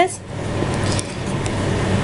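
Steady rustling handling noise as a hand moves a small plastic rice mold about over a fleece blanket.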